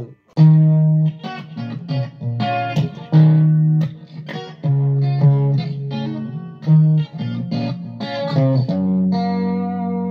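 Electric guitar played through a Zoom G2.1U multi-effects pedal preset into a guitar amp: a riff of separately picked notes, then a held chord ringing out for the last second or so.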